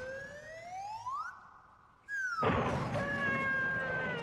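A slide whistle glides smoothly up in pitch for over a second, then after a short gap glides back down: the comic sound effect dubbed over a car's corkscrew jump. From about halfway through, a rushing noise with a few steady held tones runs underneath.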